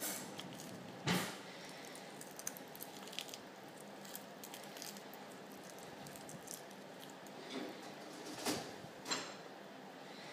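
Quiet mouth and chewing sounds of a toddler eating dried seaweed, with faint small ticks and a few short breathy sounds, one about a second in and two near the end.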